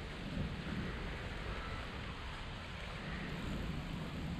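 Wind rumbling unevenly on the microphone over a steady outdoor hiss.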